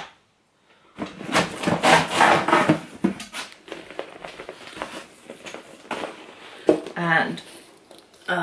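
Rustling and light knocks as a black leather handbag is pulled out and handled on a table, mixed with a woman's voice murmuring. It starts after a silent gap of under a second.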